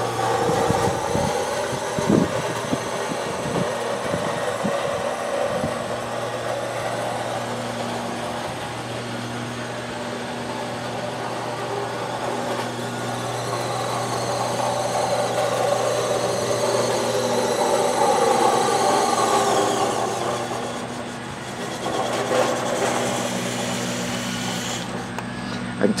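Small radio-controlled truck's electric motor and gearbox whining as it drives on concrete while towing a metal trailer, the whine rising and falling in pitch as it speeds up and slows, with tyres rolling on the concrete.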